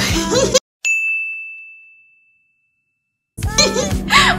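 Music cuts out, and a single high bell-like ding strikes once and rings out with one clear tone, fading over about a second and a half. Music and voices come back in near the end.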